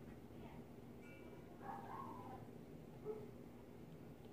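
Faint, distant voices from elsewhere in the house over a steady low room hum, loudest about a second and a half in.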